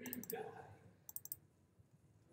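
Clicking of a computer pointing device while navigating a file-open dialog: a click at the start, then a quick cluster of about four just after a second in.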